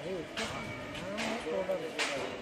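People talking, starting suddenly, over a steady low background noise.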